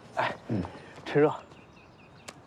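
Only speech: a man's voice says a short line in Mandarin, "来，趁热" ("come on, eat it while it's warm"), in three brief syllable groups.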